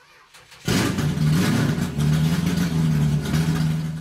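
A car engine: a few clicks, then the engine catches about two-thirds of a second in and runs loudly on a steady low note, cutting off abruptly at the end.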